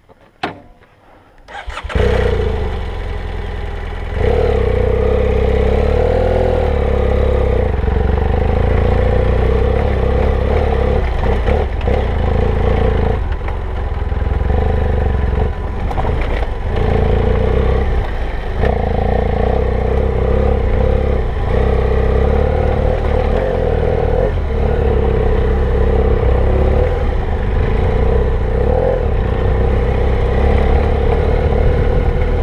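BMW F800GS parallel-twin engine starting after a click about two seconds in, then running under load as the motorcycle rides an off-road trail. The throttle rises and falls, with short dips in the engine sound every few seconds.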